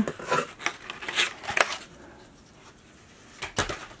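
Cardboard box flaps being pulled open by hand: a run of short scraping, rustling sounds in the first two seconds, then a louder thump near the end.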